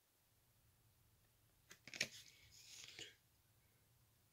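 Near silence, broken by a few faint clicks and rustles about two seconds in and again around three seconds: trading cards being handled as one card is swapped for the next.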